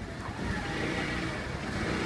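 A pause in a speech: steady background noise with no distinct event.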